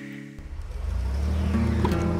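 A car engine rumbling low and steady, coming in suddenly about half a second in and growing louder as a guitar chord dies away.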